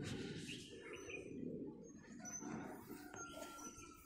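Birds chirping faintly in short high calls, with one longer held note near the end, over a low steady background hum of outdoor noise.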